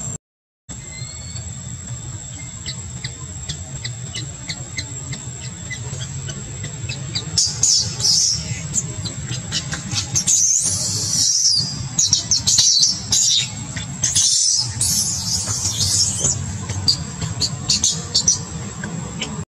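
Infant long-tailed macaque squealing in short, shrill bursts that come in spells and grow louder from about seven seconds in. A thin, steady high tone runs underneath.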